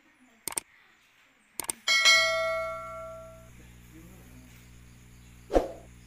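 Subscribe-button sound effect: two short clicks, then a bell dings once and rings out over about a second and a half, leaving a low hum. A single thump near the end.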